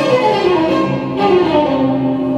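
Arabic orchestral music: a violin section plays a sweeping, gliding melody over sustained lower strings, in the instrumental introduction to a classic Egyptian song.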